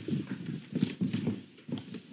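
Irregular knocks and clunks of high-heeled shoes stepping on a hollow wooden stage, mixed with the handling of swivel chairs and handheld microphones as people sit down.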